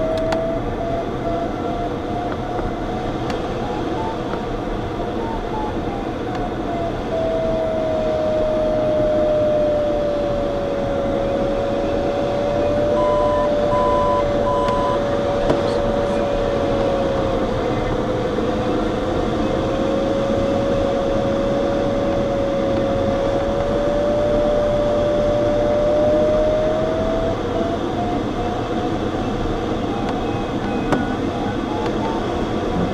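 Steady rush of airflow in a glider cockpit, with the audio variometer sounding a single tone that drifts slowly down and back up in pitch, breaking into beeps a few seconds in and again near the end. A short run of three higher beeps about 13 seconds in.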